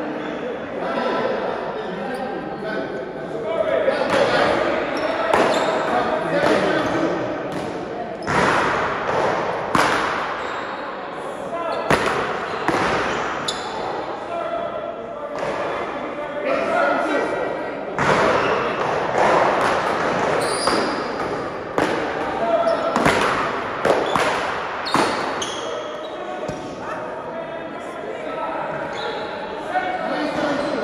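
Paddleball balls smacking off paddles, the wall and the floor at irregular intervals, each hit echoing in a large walled indoor court, over indistinct talking.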